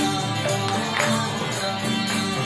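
Kirtan music played loud and without a break: chanting over sustained pitched instruments, with jingling hand percussion.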